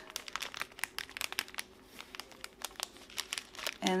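Small clear plastic zip bags crinkling as they are handled and turned, with irregular crackles.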